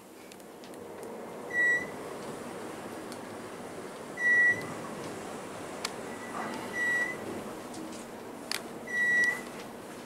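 Armor traction elevator car in motion with a steady low running sound. A short electronic beep sounds four times, about two and a half seconds apart, as the car passes floors.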